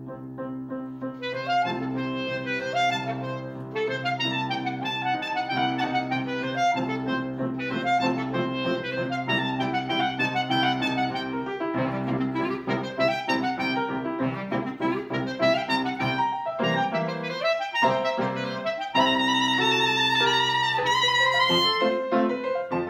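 Clarinet playing a melody with grand piano accompaniment, in a sonatina; the playing gets louder near the end.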